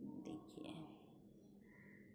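Faint whispered voice, mostly in the first second, over a steady low hum.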